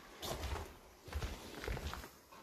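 Footsteps on a gritty, debris-strewn floor: three or four soft steps with light scuffing.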